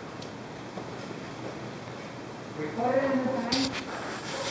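Low steady background noise, then a short untranscribed utterance from a person's voice about three seconds in, followed at once by a brief sharp noise.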